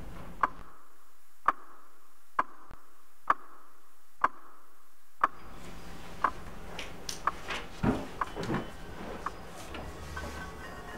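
A clock ticking, sharp single ticks about once a second, for the first five seconds. Then quiet room sound returns with scattered small clicks and taps.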